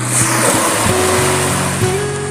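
A small sea wave washing up a sandy beach, a rushing hiss that swells just after the start and fades after about a second and a half, over background music.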